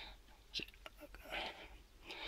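Faint breathing and a few small clicks about half a second to a second in, as an AA rechargeable cell is picked up off a workbench by hand.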